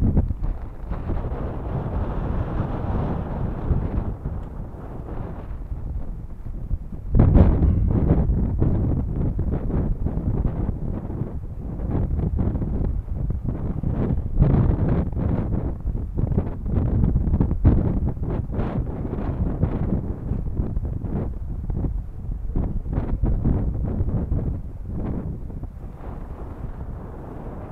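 Wind buffeting the camera microphone: a low, gusty noise that comes in uneven pulses and grows louder about seven seconds in.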